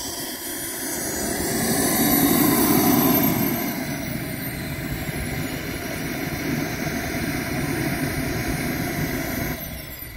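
Turbine engine of a radio-controlled BAE Hawk model jet running with a high whine while it taxis. About two seconds in, the whine rises briefly in pitch and loudness, then settles back to idle. Just before the end the level drops suddenly as the engine is shut down.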